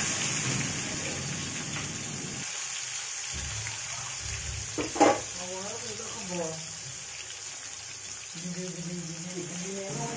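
Sliced onion frying in hot oil in an aluminium kadai, a steady sizzle, with a spatula stirring it about halfway through.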